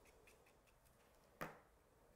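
Near silence: quiet room tone, with one short click about one and a half seconds in and a few fainter ticks.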